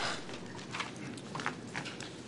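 Paper rustling and shuffling, with scattered small clicks and knocks, and a denser burst of rustling at the start.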